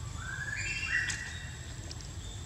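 A short run of high whistled calls, about three clear notes stepping up in pitch, the loudest about a second in.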